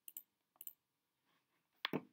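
Faint computer mouse clicks: three pairs of quick, sharp clicks, the last pair the loudest.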